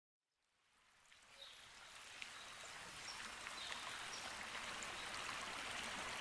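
Shallow stream flowing and trickling, fading in from silence over the first couple of seconds into a steady water rush, with a few faint plinks.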